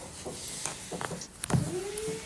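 A phone being handled and moved: rubbing and a few sharp clicks, then a short tone that rises and holds near the end.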